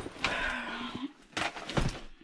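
Rustling and shuffling of a fabric bag and cardboard boxes being moved about, with two sharp knocks in the second half.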